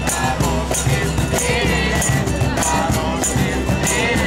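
Street band's percussion music: a large hand-held frame drum and rattling shakers keep a steady beat of about two strokes a second, with a wavering melody over it.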